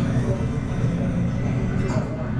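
Restaurant din: background music with indistinct voices of people talking.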